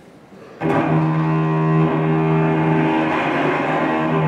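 Solo cello bowing long, sustained low notes. It enters about half a second in, after a short lull in which the previous chord fades away.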